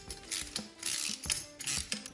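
Steel strut channel and bolts being handled and fitted together by hand: a run of light metal clicks and clinks with short scraping noises.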